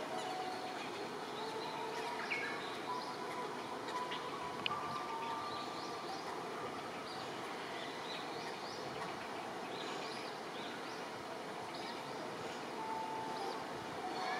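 Outdoor background noise with many short, high bird chirps and calls scattered throughout, and a few brief held whistle-like notes.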